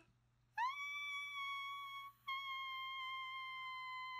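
A single high, sustained musical tone that swoops up into a held note about half a second in. It breaks off briefly about two seconds in, then resumes and wavers slightly near the end.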